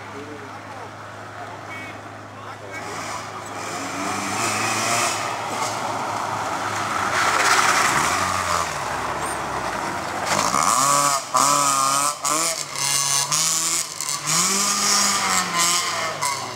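A Polonez Caro rally car's engine approaching, growing louder to its closest pass about halfway through. It then revs up and down in repeated rising and falling swells as it drives away.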